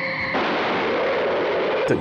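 Sound effects from a 1950s monster-movie soundtrack: a brief steady tone, then about a second and a half of loud, steady hissing noise that ends just before the next words.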